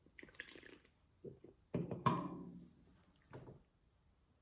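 A man sipping a fizzy drink from a can, with slurping in the first second. About two seconds in there is a short hum or grunt from his throat, and near the end a soft knock as the can is set back down on a wooden table.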